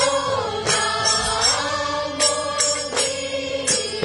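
A group singing a chant-like song together, with a drum struck several times through it.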